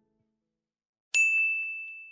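Near silence, then a little past halfway a single high, bell-like ding, struck sharply and left ringing as it slowly fades: an edited outro sound effect.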